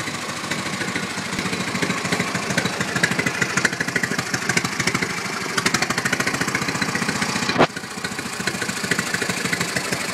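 LeRoi two-cylinder stationary engine running steadily with a quick, even run of firing strokes. About seven and a half seconds in there is a single sharp, louder crack, after which it runs a little quieter.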